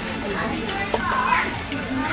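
Fast-food restaurant din: background music under other diners' voices, with a high child-like voice gliding up and down about a second in and a light click just before it.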